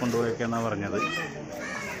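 Mostly a man's voice talking, with a bird calling briefly in the background about halfway through.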